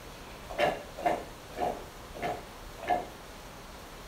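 An animal calling five times in quick succession, short calls about half a second apart.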